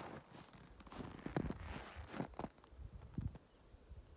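Faint, irregular crunching and scuffing on snow, a run of small knocks through the middle and a few lone ones later.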